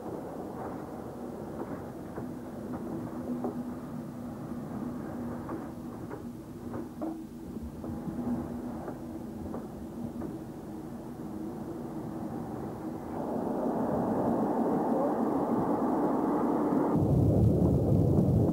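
A train running, with a steady engine hum and rattle. It grows louder about two-thirds of the way through, and a deep rumble swells just before the end.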